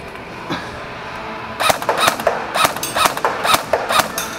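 MP5-style airsoft electric gun firing a quick string of about ten single shots, sharp cracks a few tenths of a second apart, starting about a second and a half in.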